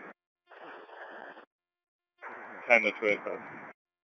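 Public-safety radio traffic on a scanner: a short burst of open-channel static about half a second in, then a second transmission with a brief voice over the static about two seconds in. Each burst cuts off sharply into silence as the squelch closes.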